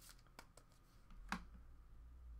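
Near silence with a few faint, short clicks and taps of trading cards being handled and picked up from a stack on a table, over a low hum.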